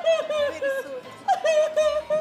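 A woman crying loudly in quick, broken, high-pitched sobs, several a second, with a short break about a second in.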